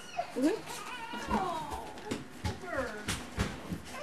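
Newborn baby fussing, with a few short, thin whimpering cries that rise and fall in pitch, along with a few soft knocks.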